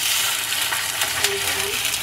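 A whole grouper sizzling steadily in hot frying oil just after being laid in the pan, with scattered pops and crackles.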